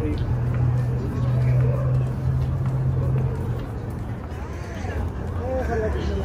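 City street noise: a steady low traffic drone with music playing and voices in the background.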